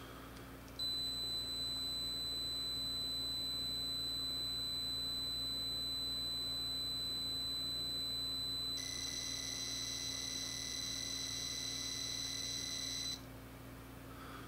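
Sharp EL-5500III pocket computer's buzzer sounding its cassette save signal: a steady high-pitched leader tone starting about a second in, then from about nine seconds a rapid warble of a high and a lower tone as the program data goes out, cutting off suddenly near the end. The data is frequency-shift keyed, by the owner's account bursts of 4 kHz for zeros and 2 kHz for ones.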